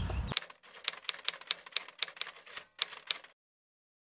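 Typewriter typing sound effect: a run of quick, irregular key clicks, about five a second, for roughly three seconds, stopping abruptly.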